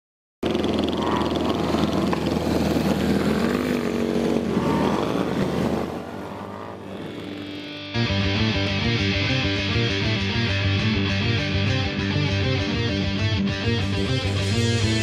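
Motorcycle engines revving, their pitch rising and falling, fading down after about six seconds. At about eight seconds heavy rock music with guitars kicks in with a steady driving rhythm.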